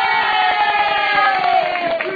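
A group of women cheering and shrieking, one long cry held and slowly falling in pitch.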